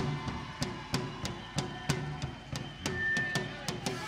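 Live folk band music thinned to mostly percussion: sharp drum hits about three a second over a low bass note.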